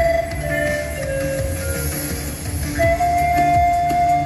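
Panpipes playing a slow melody over a recorded backing track with a steady beat from a portable loudspeaker; a long held note begins near the end.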